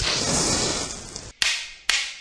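End-card logo sound effect: a long swoosh, then two sharp cracks about half a second apart.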